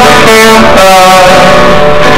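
Acoustic guitar played with a man singing, the sung notes held and changing every half second or so. Loud throughout.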